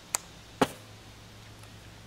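Two short, sharp clicks about half a second apart, over a faint steady low hum.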